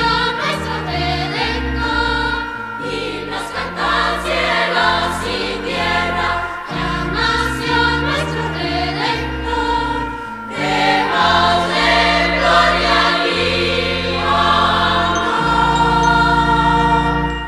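A choir singing a Spanish-language Christmas song over sustained low notes, the music dipping briefly about two-thirds of the way through before swelling again.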